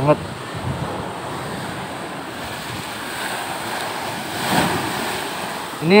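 Rough sea surf surging and breaking on the shore at an unusually high tide, with wind buffeting the microphone. The surf swells loudest about four and a half seconds in as a wave crashes.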